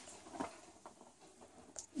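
A few faint small clicks and rustles of fingers handling thin wires and a small plastic headphone-connector back shell, as the conductors are poked through it.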